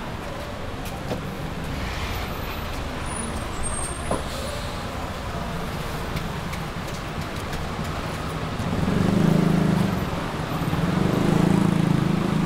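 Road traffic on a city street, a steady wash of passing vehicles. In the last few seconds a nearby engine swells louder twice as vehicles pass close by.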